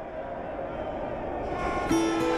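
A noisy rumble grows steadily louder, then about two seconds in a loud, steady horn blast cuts in together with men yelling.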